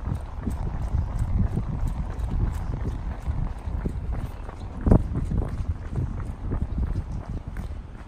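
Running footsteps on a paved lane, picked up by a handheld phone's microphone, with a steady low rumble underneath; one louder thump about five seconds in.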